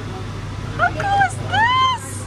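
A person's voice: a short exclamation about a second in, then a high squeal near the end that rises and falls in pitch. A steady low hum runs underneath.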